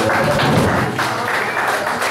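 Audience applauding as the band's song stops.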